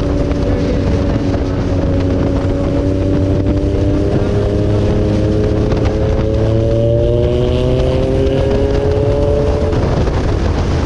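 Rusi Sigma 250cc motorcycle engine and exhaust under way, heard from the rider's seat over wind buffeting on the microphone. The engine note holds steady, then climbs steadily in pitch as the bike accelerates, and breaks off just before the end as the throttle is eased or a gear changes.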